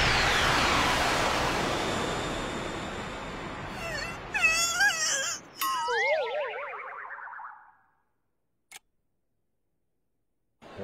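Comedic cartoon sound effects for a knockout blow: the long, slowly fading tail of a loud hit, then wobbling, wavering tones that die away about eight seconds in. A single short click follows, then silence.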